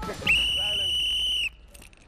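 A sports whistle blown in one long blast of a little over a second, a single steady high note, with faint voices underneath.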